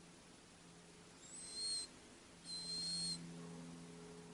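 Russian hound howling ('singing'): two drawn-out, steady high notes, the first starting about a second in and the second about two and a half seconds in, with a short pause between them.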